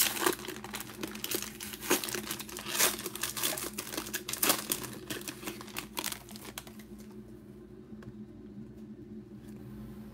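Foil wrapper of a trading-card pack being torn open and crinkled by hand, in a busy run of sharp crackles that dies down about six seconds in as the cards come out.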